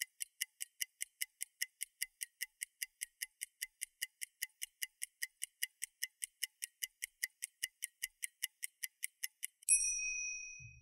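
Clock-ticking timer sound effect: light, high ticks at an even pace of about four and a half a second, counting down the thinking time. It ends near the close with a single bell-like ding marking time up.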